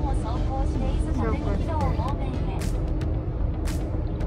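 Car cabin noise at highway speed: a steady low rumble of tyres and engine. A voice talks over it for the first couple of seconds, and a few sharp clicks come near the end.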